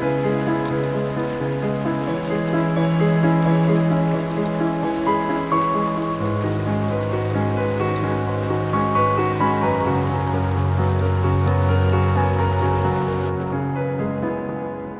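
Steady rain falling, with individual drops ticking, over slow sustained synthesizer chords and a deep bass note. The rain stops abruptly near the end while the chords carry on.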